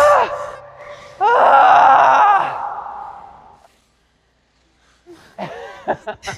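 A person's voice, not words: a short cry right at the start, then a loud drawn-out vocal sound with a wavering pitch about a second in, lasting over a second. It fades to sudden silence, then laughter starts near the end.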